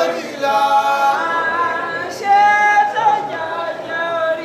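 Unaccompanied singing voices holding long, steady notes, with a short break about two seconds in.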